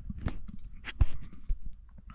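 Handling noise and a series of sharp clicks and knocks from fingers fiddling with a GoPro camera right at its microphone, pressing its buttons to switch off its red recording light. The loudest knock comes about a second in.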